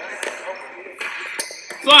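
Indoor basketball game sounds: faint voices over a steady room noise, with a few sharp taps or pings from the ball and court, and a loud shout of "Flight!" right at the end.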